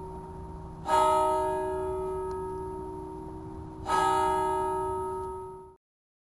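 A bell rings on from an earlier stroke, then is struck twice about three seconds apart, each stroke ringing out with several steady overtones and slowly fading. The sound cuts off suddenly near the end.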